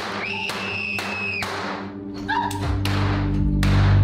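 A series of sharp bangs, each with a short echoing tail, over a high held tone in the first second or so. A low, steady music drone swells in about two and a half seconds in and grows louder.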